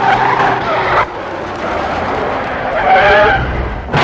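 Film-soundtrack sound of a heavy tanker truck driving tilted up on one row of wheels: tyres squealing and skidding on asphalt over the diesel engine running under load. The squeal swells and wavers in pitch about three seconds in.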